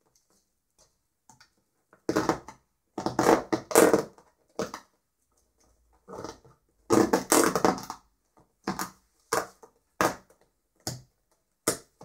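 A crumpled sheet crinkling as it is scrunched in the hand and dabbed onto a painted canvas, in about ten short crackly bursts with brief silences between.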